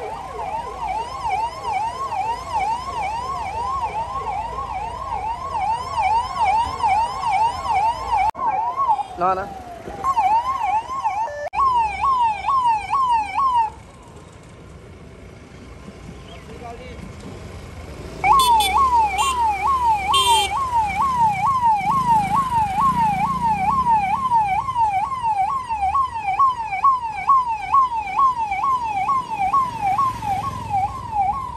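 Police vehicle's electronic siren in a fast yelp, sweeping up and down a few times a second. It cuts out for about four seconds midway, leaving a low rumble of traffic, then starts again.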